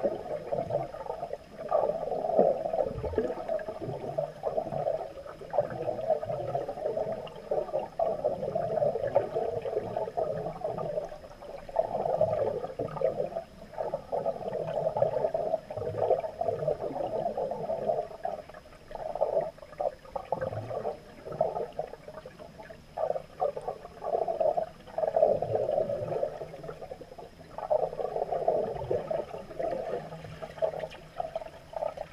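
Underwater sound of a scuba diver's regulator: bursts of bubbling exhalation a few seconds long, with short gaps between breaths, muffled through an underwater camera housing.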